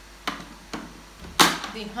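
Juice extractor's cover and metal locking handle being fitted back on: three short sharp clacks, the loudest about one and a half seconds in.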